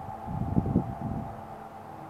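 A low, brief rush of noise on a handheld microphone held close to the mouth, about half a second in, over a faint steady hum.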